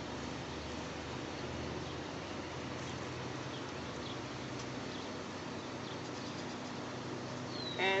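Honeybees buzzing steadily around an open hive, a low even hum under a hiss of outdoor noise, with a few faint high chirps.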